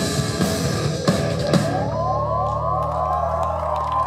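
Live rock band with drum kit, electric guitar and keyboard playing the last bars of a song. The full band plays with drum hits until about a second and a half in, then the drums stop and a final chord is held ringing, with rising glides in pitch above it.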